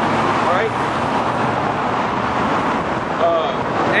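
Steady road-traffic noise, an even rushing of vehicles on the street, with brief snatches of a voice underneath.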